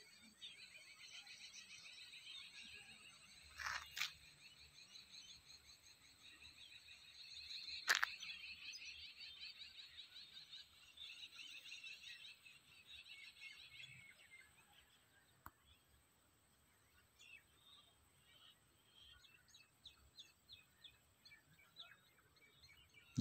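Faint chirping of birds, a dense run of quick calls that fades out about two-thirds of the way through, leaving near silence. Two sharp clicks come about four and eight seconds in, the second the loudest sound.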